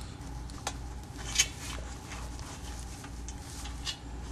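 Faint handling noises at a fly-tying vise: a few light rustles and clicks, one a little sharper about a second and a half in, over a low steady hum.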